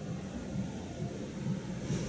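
Low, steady background rumble of room noise between spoken sentences.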